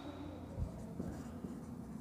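Marker writing on a whiteboard: faint strokes with a few light ticks as the tip touches the board.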